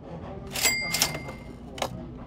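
Chopsticks clicking against a rice bowl three times as the bowl is emptied, the first click ringing briefly.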